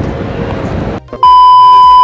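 Outdoor background noise for about a second, cut off by a loud, steady, high test-tone beep of the kind played with TV colour bars, held flat for about a second.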